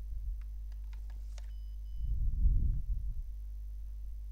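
A steady low electrical hum with a few faint clicks in the first second and a half, two short high beeps about a second and a half in, and a low, muffled rumble from about two to three seconds in.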